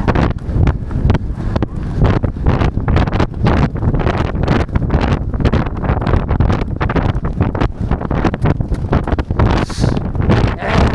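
Heavy wind buffeting the microphone of a camera on a galloping racehorse, with the horse's hoofbeats and gear jolts going by quickly under it.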